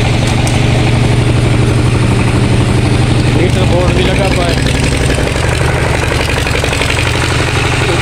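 A Petter engine running steadily, driving a belt-driven dynamo that powers a welding plant; its low, rapid beat shifts slightly a little past halfway.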